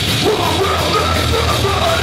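Live heavy hardcore band playing: distorted guitars, bass and drums under a vocalist yelling into a microphone, loud and steady, as recorded from the audience in a small club.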